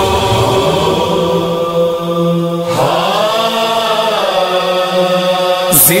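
A singer holding long, drawn-out notes in an Urdu devotional chant about Imam Hussain and water: one note held through the first half, then a dip in pitch and a second long held note.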